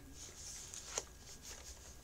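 Faint rustling of a packaged item being handled, with a single sharp click about a second in.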